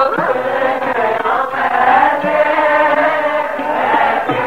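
Sikh kirtan: a devotional hymn chanted and sung to harmonium accompaniment, the pitch of the voices bending continuously.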